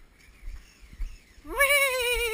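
A person's long, drawn-out wordless call, starting about a second and a half in and slowly falling in pitch. It follows a quiet stretch with only light wind rumble.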